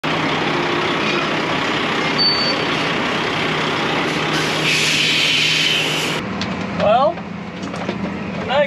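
Diesel semi truck running close by, with a short high squeal about two seconds in and a steady hiss for over a second just before six seconds. The sound then cuts to the steady hum of a tractor cab, with a brief voice near the end.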